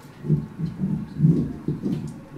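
Microphone handling noise: a series of low, muffled thumps and rumbles as a hand-held vocal mic is gripped and adjusted close to the face.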